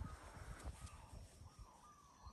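Near silence: faint outdoor background with a few faint, short bird calls.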